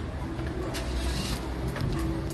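Street traffic noise: a motor vehicle's engine running nearby as a steady low rumble, with a brief hiss about a second in.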